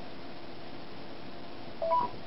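A smartphone's short two-note rising beep near the end, the voice assistant's cue that it has started listening, over a steady faint room hiss.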